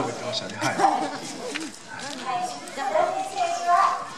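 Speech through a handheld microphone and loudspeaker.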